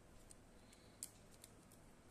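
Faint clicks and light rustling of plastic basket-weaving wire being threaded by hand through a woven plastic-wire basket, with one sharper click about a second in.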